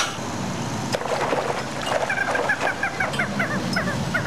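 A bird's quick run of short chirps in the second half, over a steady low hum.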